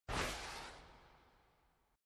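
Whoosh sound effect of a TV network logo intro: it hits suddenly right at the start and fades away within about a second.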